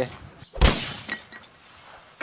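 A single sudden crash about half a second in, a low thump with a shattering tail that fades within about half a second.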